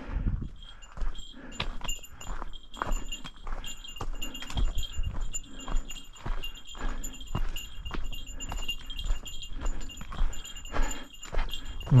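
A small bear bell carried by a walking hiker, jingling with each step, over crunching footsteps on a gravel trail at about two steps a second.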